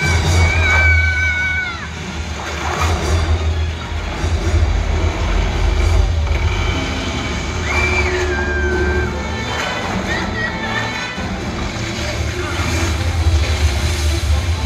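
Film soundtrack played over cinema speakers: flood water rushing and sloshing over a heavy low rumble, with shouting voices and music.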